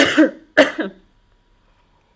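A person coughs twice to clear their throat, the two coughs about half a second apart.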